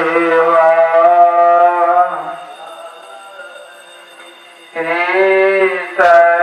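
Devotional music: a voice chants in long held notes. It drops away about two seconds in and comes back strongly near the end.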